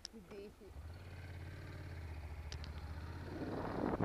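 Honda NC700's parallel-twin engine running at low revs as the motorcycle rolls along slowly: a low, steady hum that sets in shortly after the start and grows gradually louder. Wind noise on the helmet-mounted microphone builds up near the end.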